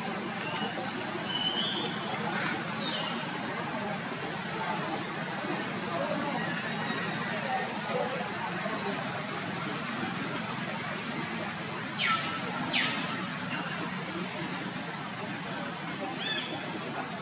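Steady outdoor background noise with faint, indistinct voices, and two short chirps sweeping downward in pitch about three-quarters of the way through.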